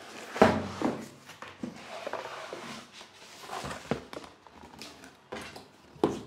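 Cardboard shipping box being turned over and lifted off a NAS packed in foam blocks: a sharp thump about half a second in, then cardboard and foam rubbing and scraping, with several knocks and one more thump near the end.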